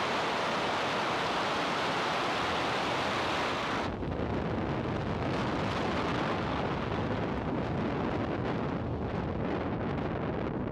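Falcon 9's first-stage Merlin engines at liftoff, a loud steady roar. About four seconds in the sound suddenly loses its top end and turns duller and crackly.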